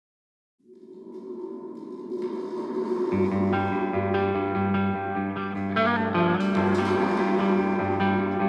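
Start of a heavy psych stoner rock track: after a moment of silence, sustained tones fade in and build, with low notes coming in about three seconds in.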